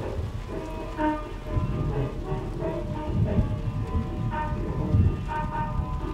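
Rain with a low rumble of thunder that swells a few times, under soft music with long held notes.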